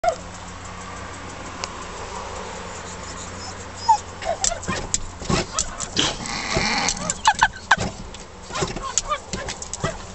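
Small dog barking angrily in quick, sharp bursts, starting about four seconds in after a quiet start, provoked by being teased.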